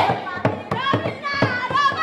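Girls' voices chanting and calling out in short phrases during a folk dance performance, over a steady percussive beat of about four strokes a second.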